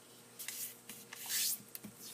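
Fingers running along the diagonal fold of a square of origami paper, pressing in the crease: two papery rubbing swishes, a short one about half a second in and a longer, louder one around a second and a half in.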